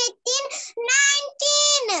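A young girl counting aloud in a drawn-out, sing-song voice, "seventeen, eighteen", counting on her fingers to work out 11 plus 8.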